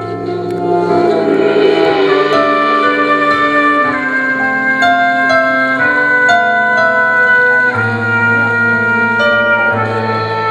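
Small blues band playing live: the horn section, trombone and saxophone, holds long chords over keyboard and bass, swelling in over the first second and moving to a new chord every second or so.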